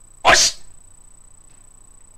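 A person's single short, sharp breathy burst, like a forceful exhale or sneeze-like 'hah', about a quarter second in.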